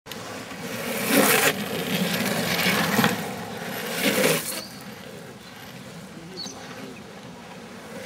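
Longboard urethane wheels rolling and sliding on asphalt: three loud rushing slide surges in the first half, then a quieter steady rolling rumble as the board moves away.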